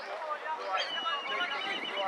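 Referee's pea whistle blown about a second in: a high trilled note held for about a second, over voices on the pitch and sideline.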